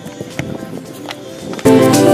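Background music: a soft, sparse passage with a few light ticks, then the music suddenly comes in much louder about one and a half seconds in.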